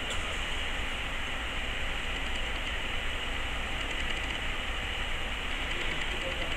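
Steady hiss of background noise with a low hum underneath, unchanging and with no distinct events.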